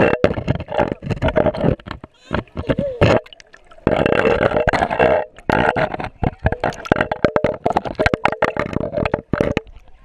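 Water gurgling and splashing against a waterproof action camera held at the surface of a shallow pool as it dips in and out of the water, in irregular bursts with a quieter stretch about two to four seconds in.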